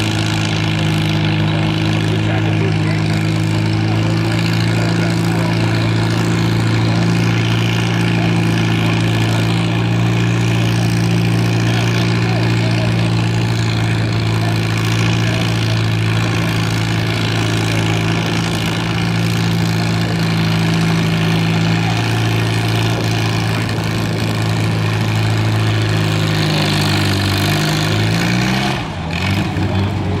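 Antique tractor engine running steadily under heavy load while pulling a weight-transfer sled. Its note falls in pitch over the last few seconds as the tractor slows to a stop at the end of the pull.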